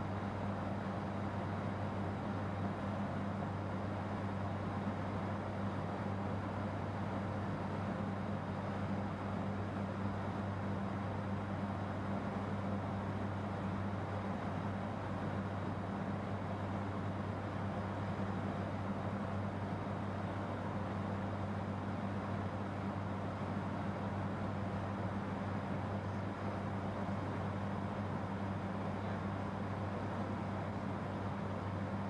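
Steady droning hum of an ATR turboprop cockpit in flight, two low hum tones over an even wash of noise, unchanging throughout.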